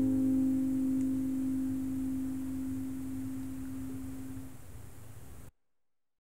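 The final chord of an acoustic guitar ringing out and slowly dying away, one note lingering longest. The sound cuts off abruptly near the end.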